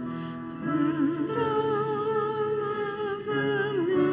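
A hymn verse sung with keyboard accompaniment. The voice wavers with vibrato over sustained chords and holds one long note through the middle.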